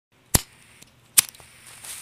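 Two sharp cracks about a second apart, like a gunshot sound effect, with a few faint clicks after the second, over otherwise near-silent track intro.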